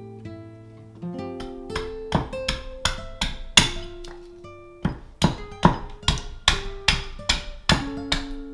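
Acoustic guitar music: held picked notes at first, then from about two seconds in a run of sharp percussive hits, two to three a second.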